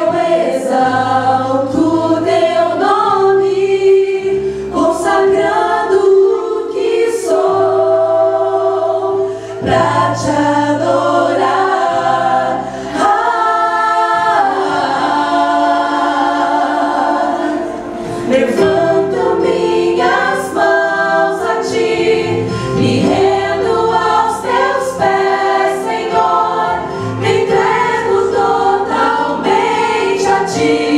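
Women's vocal ensemble singing a Portuguese gospel worship song in close harmony through microphones, over an accompaniment of sustained low bass notes.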